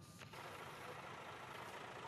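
Near silence: a faint, steady background hiss that gets slightly louder about a third of a second in.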